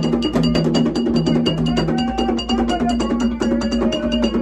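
Live ceremonial percussion: hand drums and a struck metal bell keep a fast, steady beat. Long held tones at a few different pitches sound over it, changing about every second.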